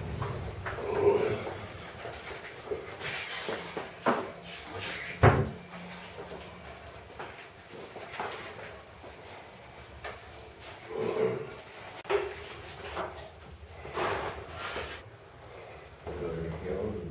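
Scattered knocks and clatters of household movement, like cupboards or doors handled, the loudest a dull thump about five seconds in, with faint snatches of voice.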